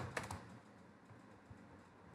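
A few faint computer keyboard keystrokes, isolated clicks spread across the two seconds.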